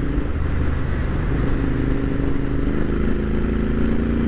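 Royal Enfield Interceptor 650's parallel-twin engine running steadily at cruising speed through aftermarket exhausts, with wind rush over the bike.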